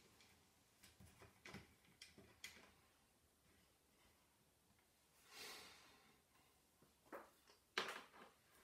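Near silence broken by a few faint clicks and a soft rustle as an old universal shutter is handled and screwed onto a brass lens, with a sharper click near the end.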